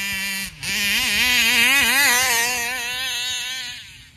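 Small two-stroke engine of a gas 1/5-scale RC car running. Its pitch holds steady at first, then wavers quickly up and down as the throttle is worked, and it fades away near the end.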